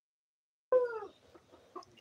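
A chicken's single short squawk, falling slightly in pitch, cutting in abruptly after silence, followed by a few faint knocks.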